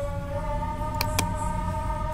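Two sharp computer mouse clicks about a fifth of a second apart, about a second in, over a steady background hum.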